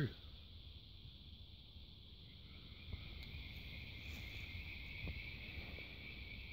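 Insects calling in a steady high trill, with a second, slightly lower trill joining about two seconds in, over a faint low rumble and a few soft clicks.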